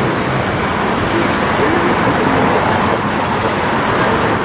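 Busy city street ambience: steady traffic noise with indistinct voices of a crowd mixed in.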